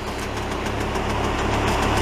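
Diesel engines of a snowblower loader and the tractor-trailer dump truck it is loading, running steadily with a low drone and slowly growing louder.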